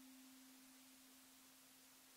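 A single ukulele note left ringing on its own after the last chord, a soft, pure, steady tone slowly dying away.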